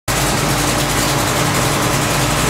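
A 496 cubic-inch big-block V8 running on an engine stand, idling steadily.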